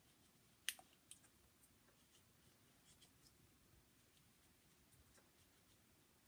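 Near silence with faint handling sounds: a sharper click under a second in, then a few fainter ticks, as Teflon plumber's tape is wound around a column of buckshot pellets by hand.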